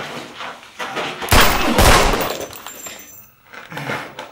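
Two loud gunshots about half a second apart, each with a long echoing tail, followed briefly by a faint high-pitched ring.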